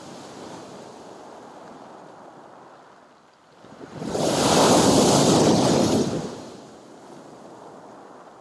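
Sea surf washing on a pebble shore, with one wave breaking loudly against a concrete pier footing about four seconds in, its rush lasting about two seconds before fading back to the steady wash.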